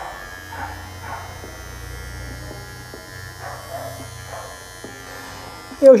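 WMARK NG-208 cordless hair clipper switched on and running with a steady, quiet motor hum and blade buzz, its blade lightly oiled. A dog barks faintly in the background.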